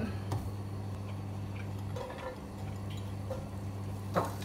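A few faint light ticks and taps over a steady low hum, as slices of chorizo go into a dry, hot non-stick frying pan.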